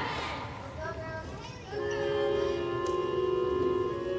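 Audience cheering dies away, and about two seconds in a musical-theatre backing track starts with sustained held chords.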